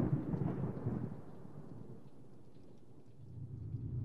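Low rumbling tail of a logo-intro boom sound effect, fading away over the first couple of seconds to a faint hush, with a low swell rising again near the end.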